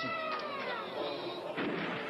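Game-show sound effect punctuating a wrong answer: one long pitched tone that slides slowly downward for about a second and a half.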